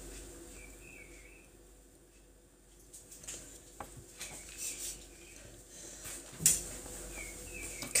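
A quiet room with a few faint small taps and clinks, and a brief louder rustle or knock about six and a half seconds in.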